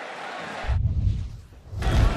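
Stadium crowd noise, then a deep booming edit-transition effect: the higher sounds cut out abruptly and a low rumble swells twice, the second swell the loudest.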